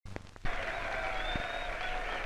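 Crowd cheering and clapping on an old film soundtrack, a dense even noise that comes in about half a second in, after a few sharp clicks as the soundtrack starts.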